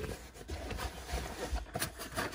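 A fabric MOLLE dump pouch being handled: rustling and rubbing of the pouch fabric, with a couple of faint clicks near the end.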